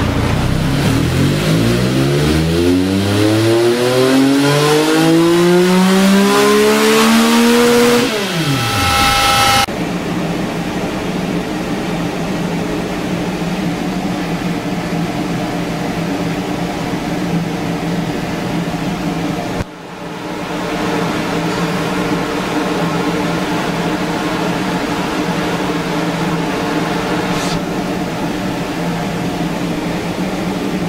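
Triumph Tiger 1050's inline three-cylinder engine on a roller dyno making a full-throttle pull, its pitch rising steadily for about eight seconds before the throttle is shut and the revs fall away quickly. After that a steady mechanical hum continues.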